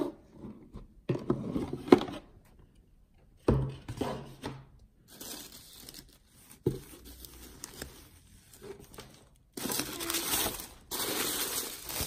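Tissue paper rustling and crinkling as it is unfolded inside a cardboard gift box, with a few soft knocks from the box being handled. The crinkling becomes dense and continuous for the last couple of seconds.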